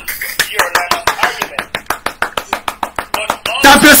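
A fast, even run of sharp hand claps, about six a second, stopping about three and a half seconds in, with a man's laughter under the first part.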